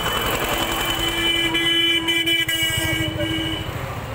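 A vehicle horn held in one steady tone for about three seconds, over the rumble of street traffic.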